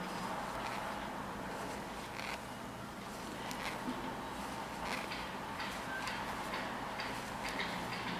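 Metal knitting needles clicking lightly and irregularly as knit stitches are worked, the clicks coming more often in the second half, over a steady background hiss.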